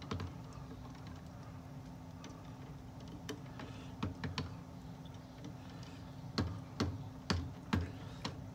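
Scattered light clicks and taps, a few at a time, from small objects being handled, over a faint steady hum. They are sparse at first and come in a quicker cluster in the last two seconds.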